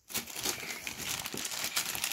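Plastic mailing bag crinkling and rustling with irregular crackles as it is torn open and handled.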